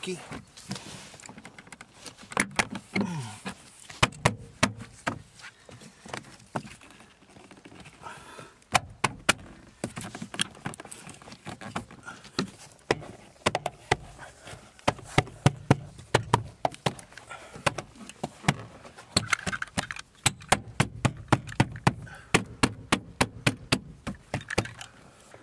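Plastic interior trim panel being worked into its tabs and clips by hand: irregular sharp clicks, knocks and taps of plastic against plastic and the car body, coming thick and fast in the last few seconds.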